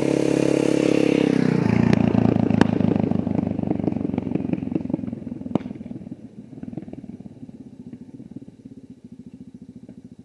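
Motorcycle passing on a dirt road: its engine drops in pitch about one and a half seconds in, then fades steadily as it rides away. Two sharp clicks are heard during the fade.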